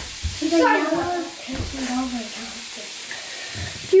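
Steady hiss of a thin stream of water pouring into a glass bowl of water, mixed with the fizzing of a dissolving LOL Pearl Surprise bath-fizz clamshell.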